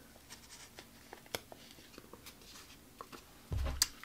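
Faint paper-handling clicks and rustles as a small metal eyelet is fitted into a punched hole in a paper strip. Near the end comes a louder low thump with a sharp click, as the metal hole punch and eyelet-setting tool is picked up and its jaws knock together.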